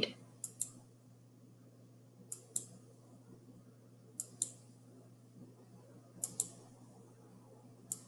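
Computer mouse clicking: a quick pair of clicks (press and release) about every two seconds, each one turning a page in an online eBook viewer. A faint steady low hum lies underneath.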